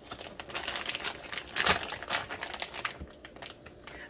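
Plastic wrapping crinkling and crackling in quick, irregular bursts as plastic-wrapped wax melt packages are handled, with one louder crackle a little before halfway.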